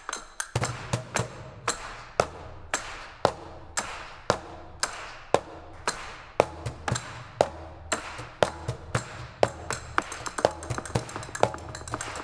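Live flamenco percussion duet: a quick, uneven run of sharp wooden clicks and taps over hand-drum strokes from a conga, with a low drum sound starting about half a second in.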